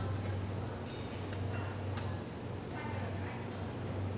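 Stainless steel lever hand juicer slowly pressing small citrus fruits, giving a few faint ticks and creaks over a steady low hum.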